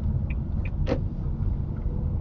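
Car driving slowly in traffic, heard from inside the cabin: a steady low engine and road rumble, with one brief click about a second in.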